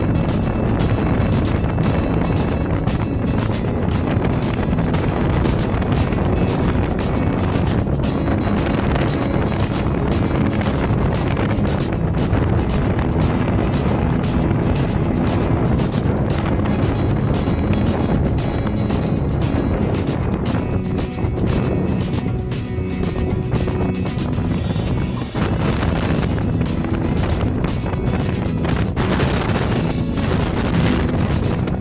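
A passenger ferry's engine running with a steady low drone while under way, with music playing over it.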